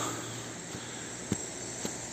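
A few faint footsteps on a leaf-covered dirt path, about three soft taps in two seconds, over a quiet steady high-pitched hiss.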